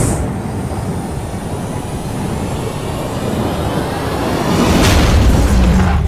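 Film sound effects of explosions and impacts: a loud, dense rumble with heavy bass under music, swelling again near the end.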